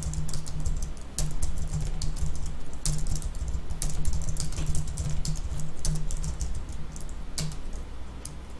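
Computer keyboard typing: irregular quick runs of key clicks, with a low hum underneath.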